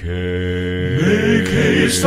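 Male gospel vocal quartet singing in close harmony. The voices hold a chord for about a second, then move to new notes, with a sharp 's'-like consonant near the end.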